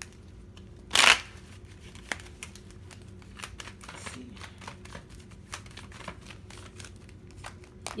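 A tarot deck being shuffled by hand: one loud card swish about a second in, then a steady run of light card clicks and rustles.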